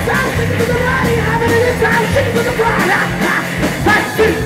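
Live rock band playing: electric guitar and electric bass over a steady beat, with a man singing.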